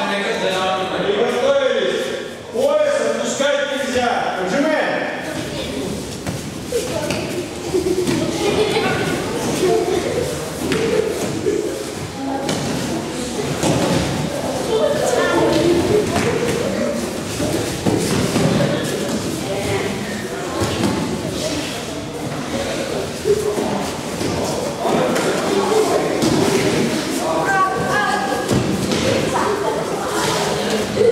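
Many children's voices and calls echoing in a large gym hall, with scattered thuds of feet and bodies on the tatami mats as they strain and pull in pairs.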